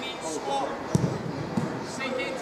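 Men's voices talking, with a sharp thud of a football being struck about a second in and a couple of softer thumps after it.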